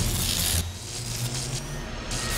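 Sound design of an animated logo reveal: a loud airy swish in the first half second that drops away, leaving a quieter low hum under a faint hiss.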